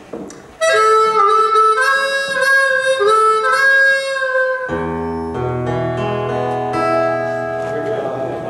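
Harmonica opening a song: a short melodic phrase of bending notes, then a held chord with low bass notes sounding underneath from just past the middle.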